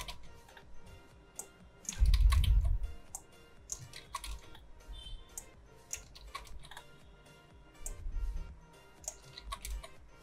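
Computer keyboard and mouse clicking in scattered taps as copy-and-paste shortcuts (Control-C, Control-V) are pressed, with two heavier dull bumps, about two seconds in and about eight seconds in.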